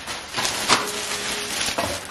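A thin white plastic bag being handled and rustled, with a sharp click about a third of the way in.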